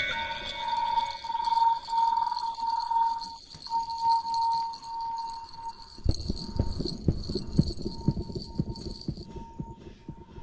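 Background music: a held, pulsing electronic tone over a thin high shimmer, joined about six seconds in by a run of low, uneven knocks. The high shimmer drops out shortly before the end.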